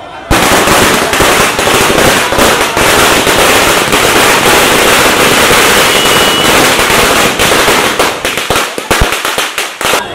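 Firecrackers going off in a loud, rapid, unbroken crackle that starts suddenly, thinning to scattered separate bangs near the end.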